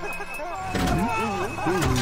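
A cartoon character's voice making a short wordless vocal sound starting about a second in, after a brief high steady tone.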